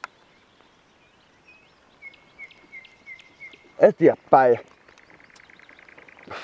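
Small songbird singing: a run of short, high chirps, about three a second, then a fast, even trill near the end.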